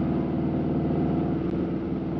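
Harley-Davidson Road King Special's V-twin engine running steadily at highway cruise, heard from the bike itself, with an even rush of wind and road noise.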